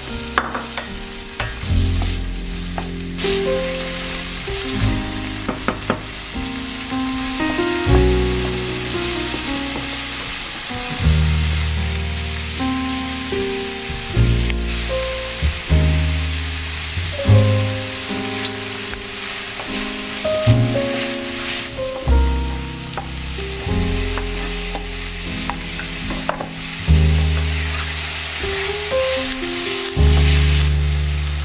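Onion, garlic and sliced sausages sizzling as they fry in a stainless-steel saucepan, with a wooden spoon stirring and clicking against the pan. Background music with slowly changing chords plays throughout.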